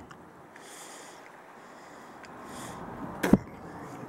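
Quiet background with two soft breaths or sniffs, then a single sharp knock a little over three seconds in.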